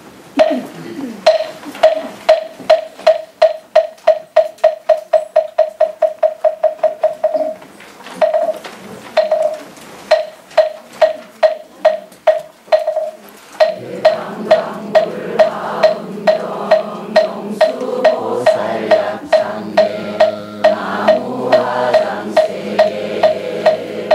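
A moktak (Buddhist wooden fish) struck in hollow, evenly pitched knocks that speed up into a quick roll, then settle into steady beats about twice a second. About halfway through, a congregation begins chanting in unison to its beat.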